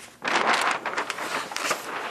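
A large sheet of flip-chart paper rustling and crackling as it is flipped over the top of the pad. The noise starts about a quarter second in and lasts nearly two seconds.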